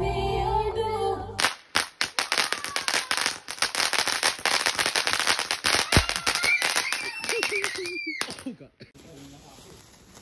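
Music with singing for the first moment, then a ground fountain firework crackling with a dense run of fast pops for about seven seconds before it stops; the last second is much quieter.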